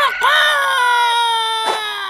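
Cartoon rooster crowing: the long drawn-out last note of the crow, held about a second and a half and sliding slowly down in pitch before it breaks off near the end.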